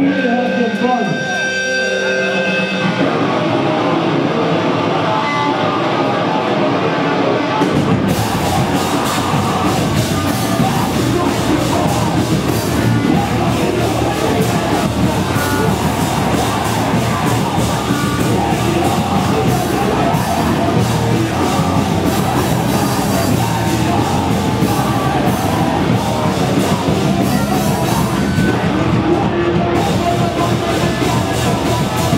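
Hardcore punk band playing live, heard loud through a camera microphone: held guitar notes at first, the sound building, and the full band with drums crashing in about eight seconds in, over vocals.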